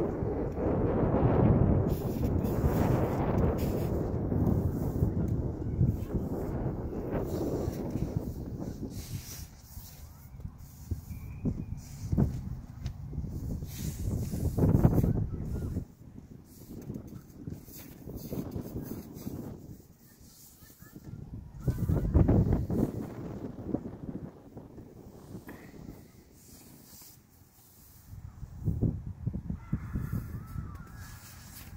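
Gusting wind buffeting the microphone. It comes in waves, heaviest over the first several seconds and surging again about a third of the way in and near two-thirds.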